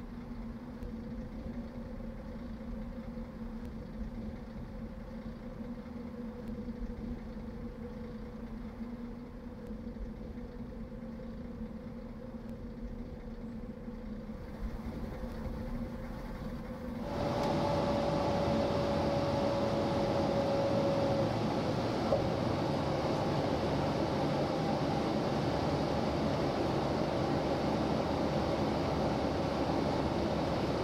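A vehicle on the move: a steady low engine hum and road noise. About seventeen seconds in, the noise jumps suddenly to a louder, hissier rush with a steady whine.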